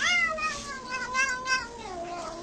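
Domestic cat meowing: one long, drawn-out meow that rises at the start and then slowly sinks in pitch, with a second meow starting near the end.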